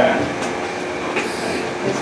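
Steady background noise of a small room, an even hiss and rumble such as an air-conditioning unit running, with a faint click about half a second in.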